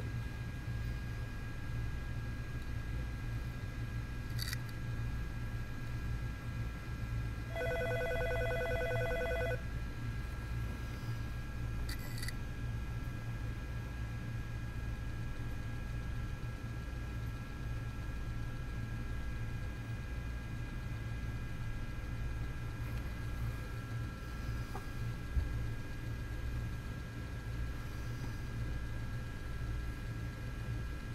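An opened hard drive running with its platter spinning: a steady low hum with a faint steady whine, and an occasional click, as the read head keeps retrying and gets stuck on fingerprint smudges on the platter, unable to read anything. About a quarter of the way in, a pulsing tone sounds for about two seconds.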